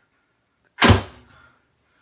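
A homemade Han-style long-powerstroke crossbow, its prod a 95 lb Korean carbon-laminated bow, shooting a 64 g bolt: one sharp shot a little under a second in, the string and limbs snapping forward, dying away within about half a second.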